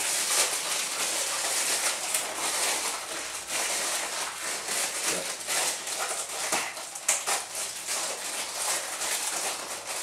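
Plastic food packaging rustling and crinkling in the hands, with many small crackles over a steady rustle.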